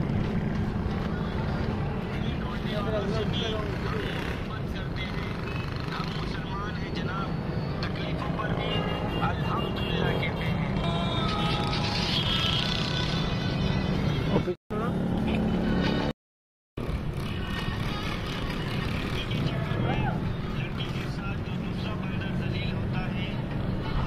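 Indistinct background voices over a steady outdoor rumble, with the sound cutting out completely twice, briefly, about two-thirds of the way through.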